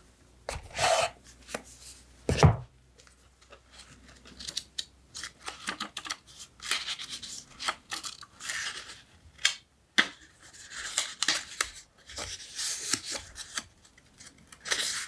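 Paper memo pads being handled in a wooden box: irregular dry rustles and riffles of paper sheets with small clicks. The loudest is a single low knock about two and a half seconds in, as of a pad or tool knocking against the box.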